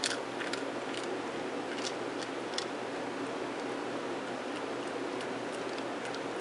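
Shih Tzu chewing a dry dog biscuit: sharp crunches, several in the first three seconds and then sparser, over a steady background hiss.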